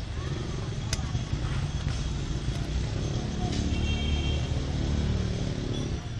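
A motor vehicle engine running, with a low rumble throughout that gets louder in the second half, and a sharp click about a second in.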